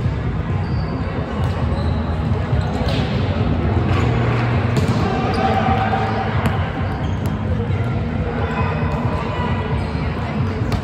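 Volleyball being played: a few sharp slaps of hands striking the ball, echoing in a large hall over a steady din of voices.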